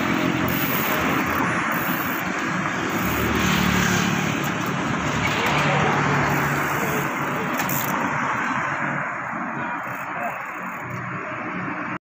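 Roadside traffic noise, steady and fairly loud, with indistinct voices of a group of cyclists.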